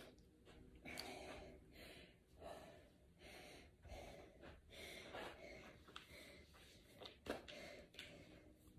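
A woman breathing hard while she catches her breath after a set of banded squats: faint, quick breaths at about one a second.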